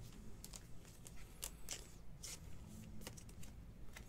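Trading cards being handled and sorted by hand: a string of short slides and flicks as cards are picked up, shown and laid down on the pile, over a low steady hum.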